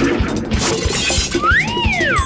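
Cartoon soundtrack: upbeat background music with a steady fast beat, a crashing, shattering sound effect in the first second, then a whistle-like glide that rises and falls near the end.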